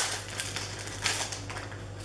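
Scattered light clicks and rustles of a small paper booklet being handled and opened, over a low steady hum.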